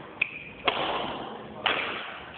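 Badminton racket striking shuttlecocks: two sharp hits about a second apart, each ringing out in a large hall, after a short high squeak near the start.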